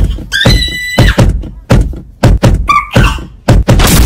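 Loud percussive thumps in quick succession, about four a second, with a short high whistling glide about half a second in.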